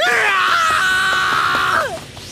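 A young man's loud, long held scream, which falls in pitch as it breaks off near the end.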